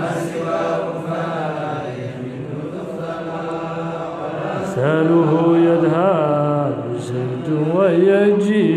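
A man chanting Arabic verse in a slow melody, holding long notes that slide in pitch. The chant softens for a couple of seconds in the middle, then grows louder from about five seconds in.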